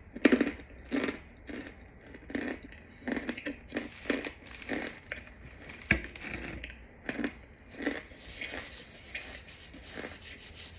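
Scented powder block molded in a water bottle being squeezed and crumbled by gloved hands: a dozen or so short crunches, roughly one or two a second, with one sharper crack about six seconds in.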